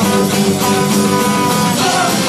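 Third-wave ska band playing live and loud, a horn holding long notes over guitar and a drum beat.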